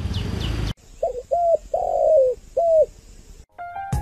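Road and engine noise cuts off abruptly under a second in; then a spotted dove coos four notes, the third one longer and dropping in pitch at its end.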